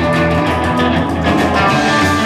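Live band playing an instrumental passage: two electric guitars, an upright double bass and a drum kit, with a steady beat.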